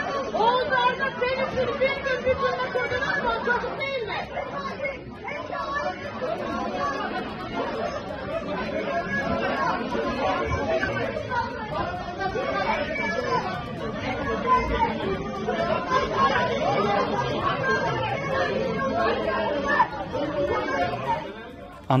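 Many people talking over one another at once in a crowded room, a continuous din of overlapping voices.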